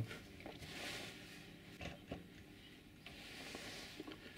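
Faint, scattered clicks and knocks of metal parts being handled as a 6.5 mm drill bit is set up against a Delrin workpiece on a small lathe. The lathe motor is not running.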